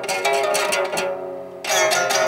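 Strings of a nearly finished mandolin, not yet tightened up to pitch, plucked by hand: a quick run of plucks, then one full strum about one and a half seconds in that rings on and fades.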